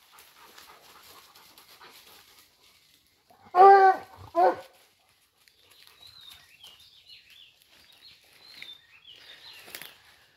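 A hunting dog barks twice in the brush, a longer drawn-out bark about three and a half seconds in and a short one just after, over faint rustling of dry leaves and branches. Faint high chirps follow in the second half.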